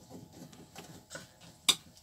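Faint clicks and scrapes as a glass cover and plastic ring are pushed into a stainless overhead light fitting, with one sharp click near the end.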